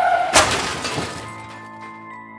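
Sound effect of a smash with shattering glass: it hits suddenly about a third of a second in and dies away over about a second, over steady background music.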